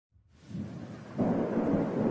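Rumbling thunder and rain noise fading in, stepping louder about a second in.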